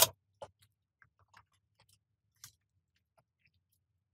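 Faint mouth sounds of a person chewing a donut: a few soft, widely spaced clicks and smacks.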